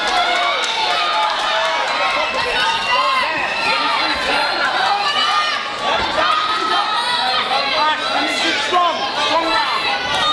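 Boxing crowd shouting and cheering without a break, many voices calling out over one another.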